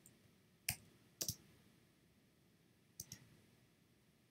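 Computer mouse clicks during screen-recorded editing: a single click, then two quick pairs of clicks, over faint room tone.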